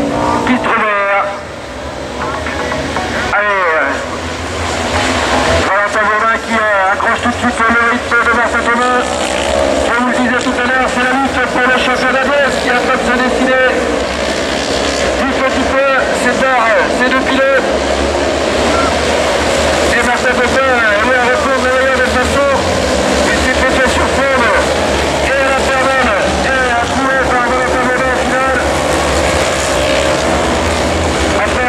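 Several autocross racing buggies on a dirt track, their engines revving up and down and overlapping as they run through the gears.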